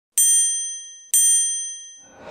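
Two bright bell-like dings about a second apart, each ringing out and fading, as the sound effect of an animated logo intro.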